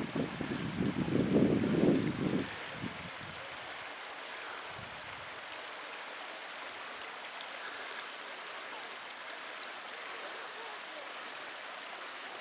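Small mountain stream running over rocks, a steady even hiss of water. For the first two and a half seconds wind gusts buffet the microphone, louder than the water.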